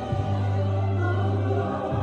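Choir singing gospel music over long held bass notes that change twice.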